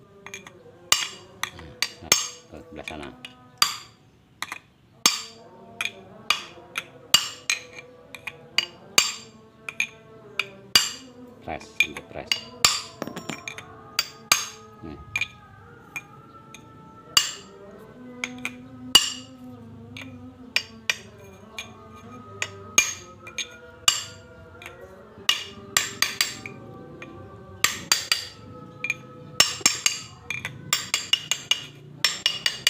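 Light hammer taps on a steel punch driving a new pinion oil seal into a Toyota Dyna 130 HT differential carrier: many sharp metallic taps at an uneven pace, some in quick runs, as the seal is seated a little at a time around its rim.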